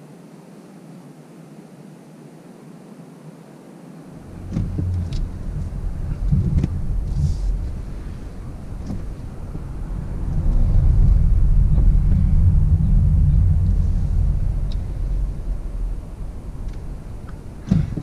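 Low vehicle rumble heard from inside a car's cabin. It starts about four seconds in, is loudest a few seconds later, then eases off, with a few light clicks over it.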